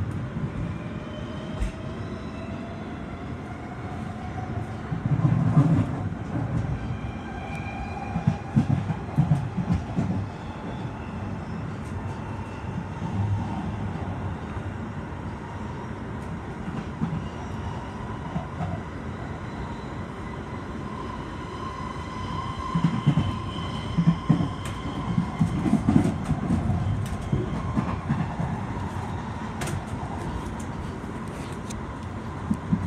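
London Underground Jubilee line train (1996 Stock) running on open track, heard from inside the carriage: a steady rumble of wheels on rail. Near the start there is a faint rising motor whine as it gathers speed. About five seconds in, and again in the last quarter, there are louder stretches of rattling and clatter over the track, with faint high-pitched squeals throughout.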